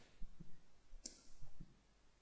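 Faint, scattered clicks and light taps of a stylus on a drawing tablet as handwriting is put down, with a short hiss about a second in.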